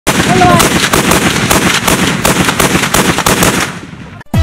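Rapid, continuous automatic gunfire, shots following each other several times a second, fading out near the end.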